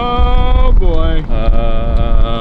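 A voice drawing out long, sliding "oh" notes, about three held notes in a row, half sung in exaggerated alarm. A low wind rumble on the microphone from the moving golf cart runs underneath.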